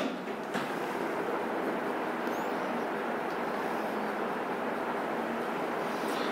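Steady room noise, an even background hiss with a faint click about half a second in.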